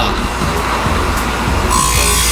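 Franzen automatic saw chain grinder running on its own, its grinding wheel cutting the chain's teeth with a steady grinding noise that changes character near the end, under background music.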